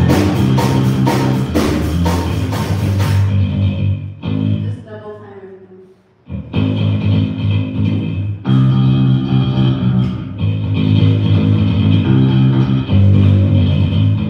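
A rock band playing in the room: electric guitars, bass guitar and drum kit. About four seconds in the band drops out, leaving a single fading tone that bends in pitch. The full band comes back in about two seconds later.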